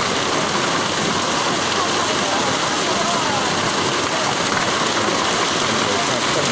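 Heavy rain pouring down steadily.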